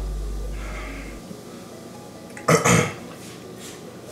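A man's short, loud burp about two and a half seconds in. A low background bass note fades out during the first second.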